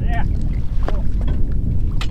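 Wind buffeting the microphone, a heavy low rumble throughout, with short snatches of a man's voice right at the start and again about a second in.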